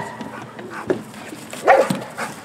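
Dog barking at the decoy during protection bitework, with one loud, short bark near the end and a weaker one around the middle.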